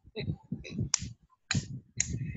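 Two sharp clicks about half a second apart, typical of a computer mouse being clicked, over a faint low murmur.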